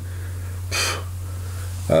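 A man's short intake of breath about a second into a pause in his talking, over a steady low hum; his speech resumes near the end.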